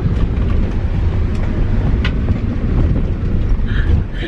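Steady low rumble of a car driving, heard from inside the cabin, with a single click about two seconds in.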